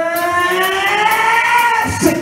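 A male rock singer's voice, amplified through the PA, holding one long sung note that slowly rises in pitch and breaks off near the end, over faint, evenly spaced high ticking.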